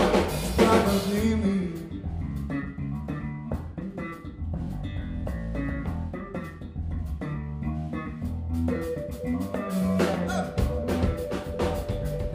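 Live band playing: a sung line ends in the first second or two, then an instrumental passage of bass guitar, drum kit and electric piano continues, with a held note coming in about nine seconds in.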